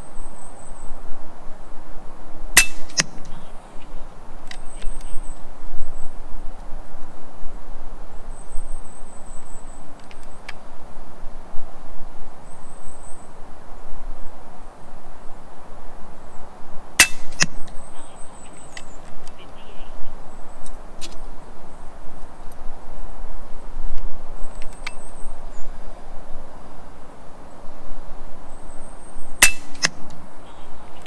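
FX Impact M3 PCP air rifle firing three shots, a few seconds in, about halfway and near the end. Each shot is a sharp crack followed a moment later by a fainter click.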